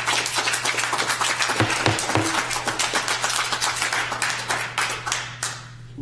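Audience applauding: a full round of clapping that thins out and stops about five and a half seconds in.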